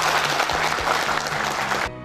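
Audience applauding, cutting off suddenly near the end, with soft background music underneath that carries on after the applause stops.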